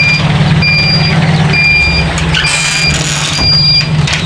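Electric egg incubator beeping, a short high beep about once a second, over the steady hum of its fan motor. A brief hiss comes just past the middle.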